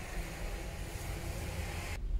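Steady background noise, a faint even hiss over a low rumble, with no distinct sound events.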